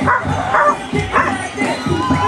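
A dog barking and yipping in short calls about every half second, over music from loudspeakers.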